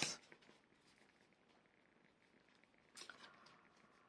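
Near silence: room tone in a small room, with one faint, brief rustle about three seconds in.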